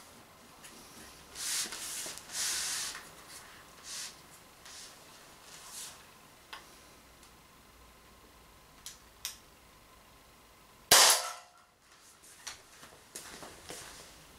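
A single sharp shot from a CO2-powered .43-calibre Umarex Walther PPQ M2 paintball pistol firing an aluminium ball, about eleven seconds in and by far the loudest sound. Before it come several softer rustling and handling noises as the tin can is set in place, and a few light clicks follow the shot.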